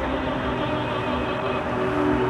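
Steady rushing hiss of the Bellagio fountain's water jets spraying, with the show's music faint beneath it.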